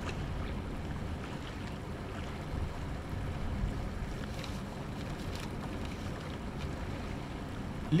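Steady low harbour ambience: an even rumble of wind, water and boat noise with no distinct events.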